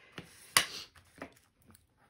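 A sharp tap on the tabletop about half a second in, with a fainter knock a little after a second, as a bone folder is set down and hands smooth glued paper inside a hardback book cover.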